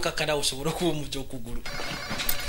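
A man's voice speaking, with a high ringing tone coming in near the end.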